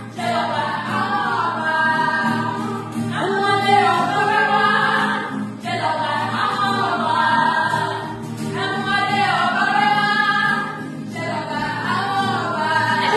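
Female voices singing a hymn together in Yoruba, in phrases a few seconds long, with strummed acoustic guitars underneath.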